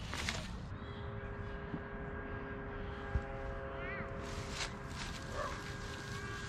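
Outdoor ambience with a steady, distant motor hum that fades in about a second in and out after about five seconds, and a brief bird-like chirp near four seconds in.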